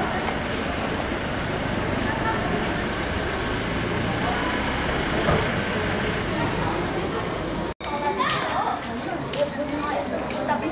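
Outdoor street ambience: a steady noise bed with indistinct voices. It is broken by a sudden brief dropout near the end, after which voices are heard more clearly.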